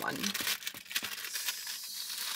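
Clear plastic bag crinkling as it is handled and pulled open, a run of small irregular crackles.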